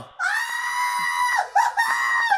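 High-pitched, scream-like cries with the music stopped: one held steady for about a second, a brief yelp, then a second steady cry near the end.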